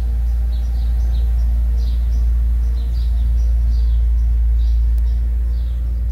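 A steady low rumble throughout, with small birds chirping in the background: short, high, falling chirps repeating two or three times a second.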